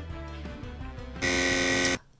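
Soft background music, then a little over a second in a loud game-show buzzer sounds for most of a second and cuts off sharply. It is the penalty buzz for taking too long to answer, which counts as lying.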